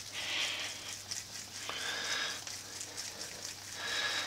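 Hands rolling a ball of raw potato dumpling dough between the palms: soft, moist rubbing in a few short spells, over a faint steady low hum.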